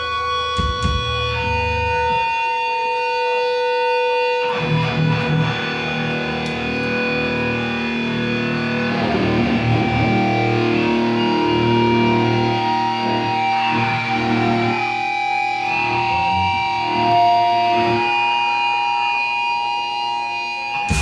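Distorted electric guitars holding long ringing notes and feedback through their amps, with no drums. A fuller, lower chord comes in about four and a half seconds in, and the held pitches shift several times.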